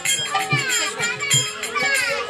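A woman singing a devotional namkirtan into a microphone in falling, sliding phrases, with a drum beating about two to three times a second and the sharp clash of hand cymbals.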